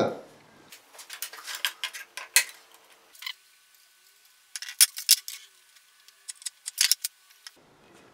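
Scattered light clicks and knocks of a wooden guitar neck and a steel square being handled and set down on a wooden workbench, in three short groups with quiet gaps between.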